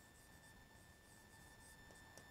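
Faint scratching of a stylus writing on an interactive display screen, barely above quiet room tone.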